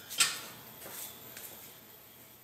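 A single sharp click about a quarter of a second in, then a few faint ticks over quiet room noise.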